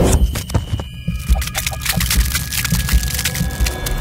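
Electronic outro sting for an animated logo: deep bass pulses repeating throughout, overlaid with rapid sharp clicks and brief high ringing tones.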